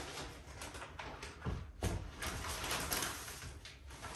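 Paper gift bag and a bouquet's crinkly red wrapping rustling and crackling as the bouquet is pulled out of the bag, with a louder bump about halfway through.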